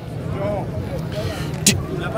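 Faint background talk over a steady low hum, in a pause between a man's loud spoken sentences, which resume with a single word near the end.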